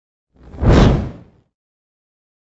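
Whoosh sound effect for an animated news-intro logo: one rush that swells and fades over about a second.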